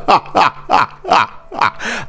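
A man laughing loudly and theatrically: a string of about five short, falling 'ha' bursts.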